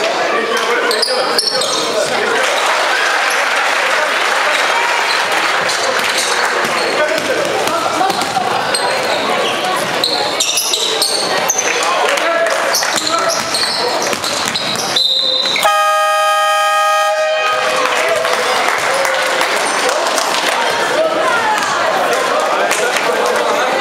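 Basketball game in a hall: a loud crowd shouting, with a basketball bouncing on the court. About three-quarters of the way in, the scoreboard horn sounds one steady blast of just under two seconds, ending the game as the clock reads 00:00.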